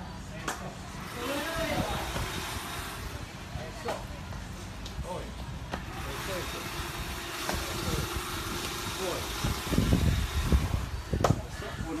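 Outdoor ambience by a parking lot: a vehicle running nearby under scattered short voices, with a few low thumps and knocks near the end.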